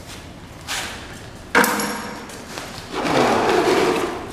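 A plywood box form being taken apart: a sharp knock with a short metallic ping about a second and a half in, then a longer rough scraping near the end as a side panel is pulled away from the fresh concrete.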